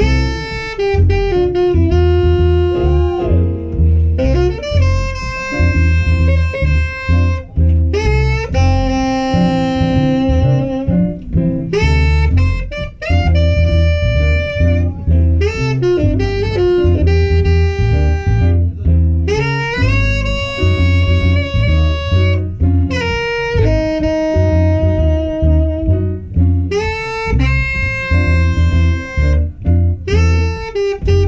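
Live small-group jazz: a tenor saxophone plays a solo line of held and running notes over piano and double bass.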